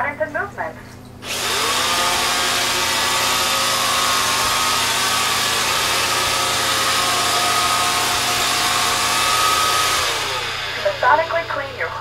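iRobot Roomba 530 robot vacuum starting up about a second in: its motor whine rises and settles into a steady running noise of vacuum motor and brushes, which fades away near the end as it stops.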